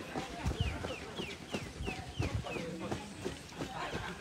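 Running footsteps thudding on a paved path, with a bird calling a quick series of short falling chirps, about three a second, that stops a little past the middle.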